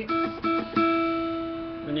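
Acoustic guitar plucking a single E note three times in quick succession. The last pluck is left to ring and fade away.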